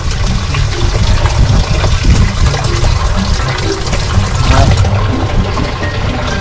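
Water pouring from a pipe into a full fish tank, splashing and bubbling steadily.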